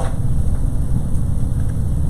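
Steady low rumble of background room noise, with no speech over it.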